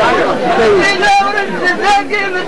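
Several voices talking over one another in a loud, overlapping group chatter.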